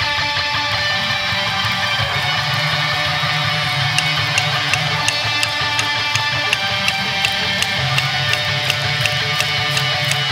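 Live rock band playing: strummed electric guitars over bass and drums, with a steady beat of sharp ticks coming in about four seconds in.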